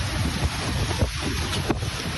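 Storm wind gusting hard against a phone's microphone, a dense rushing rumble, with a sharp knock about a second in and another near the end.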